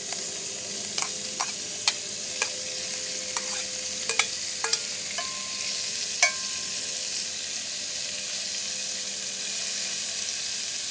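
Cubed sirloin sizzling in hot canola oil in a cast iron Dutch oven, a steady hiss. Over the first six seconds or so, a metal spoon clicks and clinks against the bowl and the pot as the meat is scraped in and moved around, a couple of the strikes ringing briefly; after that only the sizzle.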